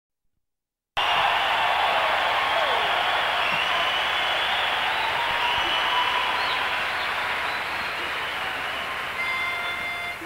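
Audience applauding and cheering, with a few whistles, slowly dying down. Near the end a steady held note comes in.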